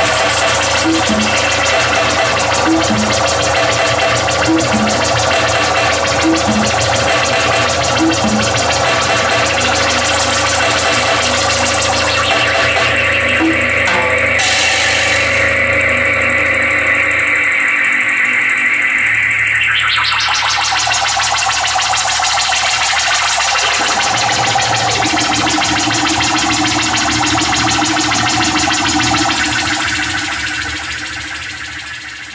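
Live synth-punk music from a drum-and-synthesizer duo: a drum kit and electronic synth layers playing loud and dense throughout. About two-thirds of the way in, a long falling sweep runs down through the mix.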